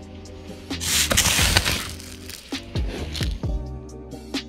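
Background music with a drum beat. About a second in, a loud rushing hiss rises over it for about a second.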